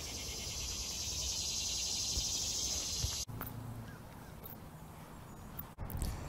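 Steady, high-pitched chorus of insects buzzing outdoors, cut off suddenly about three seconds in, leaving faint outdoor background noise.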